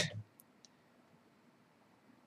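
Quiet room tone with two faint, short clicks a quarter of a second apart near the start.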